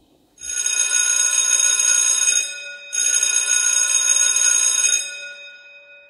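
Ringing bell sound effect on the video's end card: two rings of about two seconds each with a short break between them, the second fading away.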